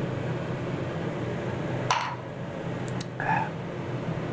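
Large 90 cm stainless kitchen range hood's extractor fan running steadily on its lowest setting, a low hum. A few brief small sounds rise above it, about two and three seconds in.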